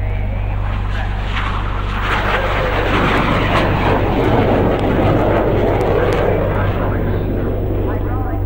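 A sampled jet aircraft passing, a rushing noise that swells up about two seconds in and eases off near the end, over a steady low synth drone in a trance track.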